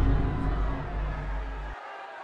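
A deep, bass-heavy sound effect added in the edit, ringing on with a few steady tones above the bass, fading slightly and then cutting off abruptly near the end.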